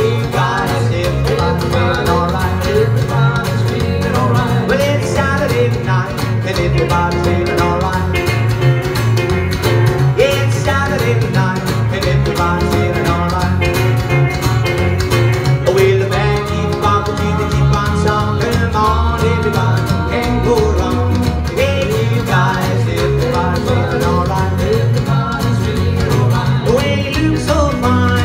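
Live rock and roll trio playing an instrumental passage: plucked upright double bass, strummed acoustic guitar and hollow-body electric guitar, with sliding lead lines on top of a steady beat.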